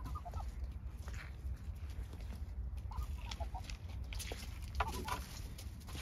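Domestic ducks giving short, soft calls in three brief clusters: at the start, about three seconds in, and about five seconds in. A steady low rumble and a few faint rustles run underneath.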